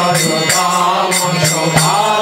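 Devotional mantra chanting sung to music, with voices over a steady low drone and a percussion beat about twice a second.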